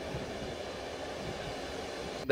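Steady rumble and rail noise of a Saltsjöbanan train running along the track.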